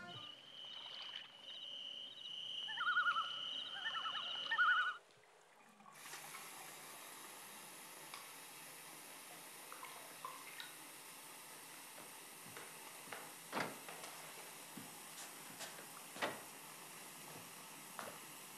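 A steady high-pitched trill with a pulsing chirp for about the first five seconds, as night-time ambience. Then, after a brief quiet, a tap runs water steadily into a bathtub, with a few small splashes or clicks.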